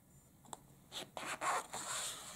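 Paper page of a paperback book rustling as a hand slides over it and starts to turn it: a small tick about half a second in, then a growing rustle through the second half.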